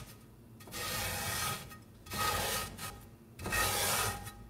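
Coarse salt being scrubbed around the inside of a cast iron skillet with a scouring sponge: a gritty rasping rub in three passes with short pauses between.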